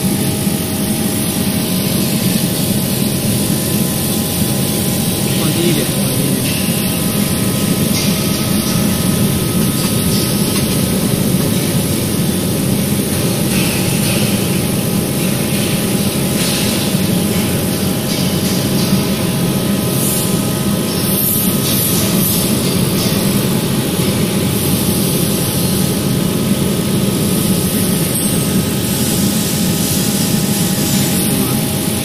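Steady, loud drone of workshop machinery, with several constant humming tones running through it.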